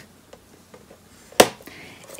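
A bone folder on a plastic scoring board while a cardstock strip is scored: a few faint ticks, then one sharp click about a second and a half in, followed by a brief faint scrape.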